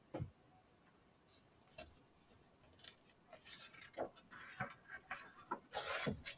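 Faint handling noises at a desk: a soft thump at the start, a few separate clicks, then a busier run of small clicks, taps and rustles in the second half.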